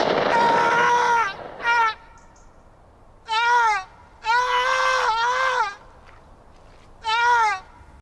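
A high-pitched voice wailing in distress, five cries that each rise then fall with a wavering tremble, the longest one drawn out and broken in two in the middle.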